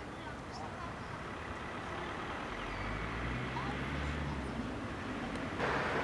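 Outdoor background of faint distant voices with a low rumble that swells and fades in the middle, like a vehicle going by, and a short burst of noise near the end.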